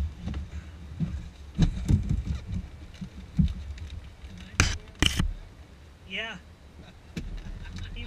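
Foil-faced windshield sunshade being handled and pressed into place against the inside of a jet's cockpit windscreen: irregular rustling and knocks, with two loud crackling rustles about halfway through. A brief voice sound about six seconds in.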